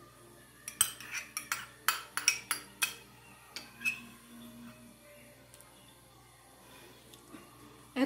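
Metal spoon clinking and scraping against a small ceramic cup as rice pudding is scooped out: a quick run of about a dozen sharp clinks, then a few more about four seconds in.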